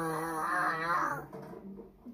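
A long, wavering, wail-like voice note from the TV's soundtrack, fading out a little over a second in, heard through the TV speaker.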